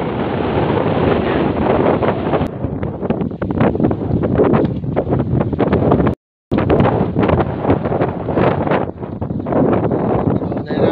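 Loud wind buffeting the microphone in an open field, a steady rough rumble with uneven gusts. It breaks off for a moment of silence a little past halfway.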